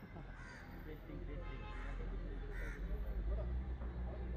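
Crows cawing a few times over murmured outdoor voices, with a low rumble growing louder in the second half.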